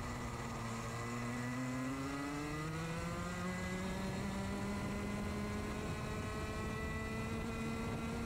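Racing kart's two-stroke engine recorded onboard: the pitch sags briefly through a corner, then climbs steadily as the kart accelerates out of it.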